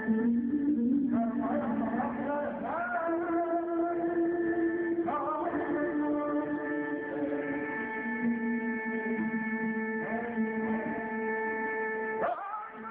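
A man singing into a microphone in long, sliding, ornamented lines over guitar accompaniment that holds steady sustained notes.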